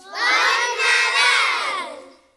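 A group of children shouting together in one loud cheer that starts suddenly, holds for about a second and a half and dies away near the end, a closing shout at the end of their Christmas carol.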